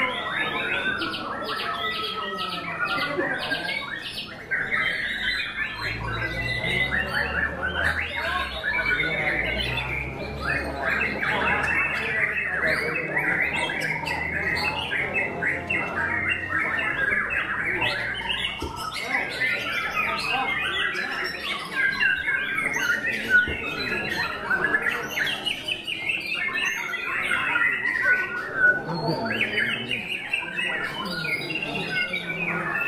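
Dense chorus of caged white-rumped shamas (murai batu) singing at once, fast varied phrases and harsh calls overlapping without pause. A low hum sits underneath for a stretch in the middle.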